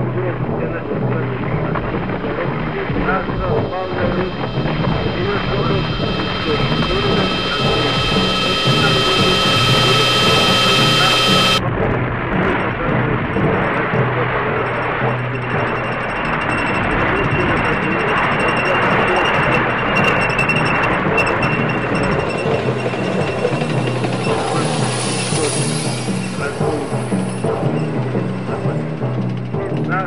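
Industrial noise music: a dense, unbroken wall of layered noise. A cluster of steady high drones cuts off suddenly about a third of the way in, leaving a broad hiss that swells and later gains a thin high whine.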